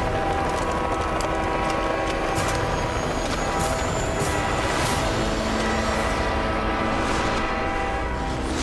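A helicopter running close by, a steady, dense rumble with held tones laid over it, as mixed in an action-film trailer soundtrack. A few brief sharp ticks sound in the middle.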